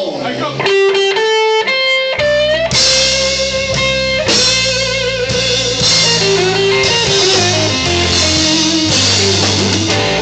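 Live electric band music: an electric guitar plays a short phrase of single notes alone, then the drum kit and low bass notes come in about two seconds in and the band plays on together.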